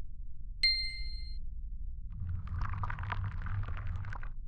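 Logo-reveal sound effects: a single bright ding about half a second in that rings for under a second, then from about two seconds in a dense crackling sparkle over a low rumble.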